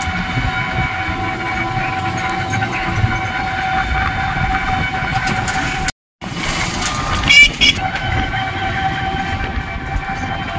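Battery-powered e-rickshaw (toto) riding along a road: a steady motor whine over road rumble. The sound drops out for a split second just past halfway, and a brief, loud wavering tone sounds soon after.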